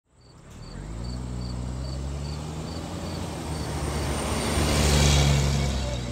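An old pickup truck driving along a road, its engine hum and tyre noise swelling as it approaches, loudest about five seconds in, then easing. Crickets chirp steadily throughout, a little over twice a second.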